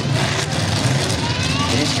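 Engines of demolition derby pickup trucks running and revving on a dirt arena, with a faint rising rev about a second in.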